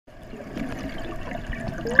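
Water bubbling and gurgling, as heard underwater on a scuba dive. It starts from silence and builds over the first half second, then holds steady.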